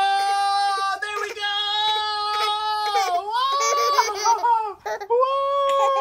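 A high voice holding a long, steady 'aaah' for about three seconds, then dipping and wavering before rising into a second, higher held note near the end.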